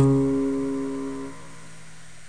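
Instrumental jazz: a single plucked string note, struck just before, rings with a clear pitch and fades away over about a second and a half, leaving a quiet lull.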